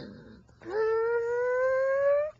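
A long, drawn-out vocal howl that starts about half a second in and rises slowly in pitch for nearly two seconds, after a short falling 'mm'.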